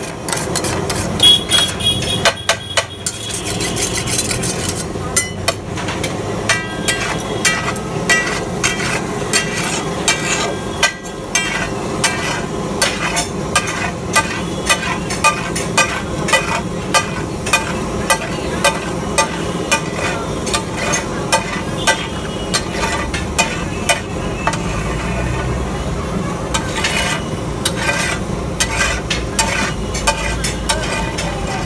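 A steel masher and flat spatula clanking and scraping on a large flat iron griddle as pav bhaji is mashed and pushed into a heap, with frying sizzle underneath. The metal strikes come rhythmically, about two a second.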